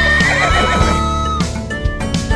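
A cartoon horse's whinny sound effect, one wavering high call lasting about a second and a half, over background music.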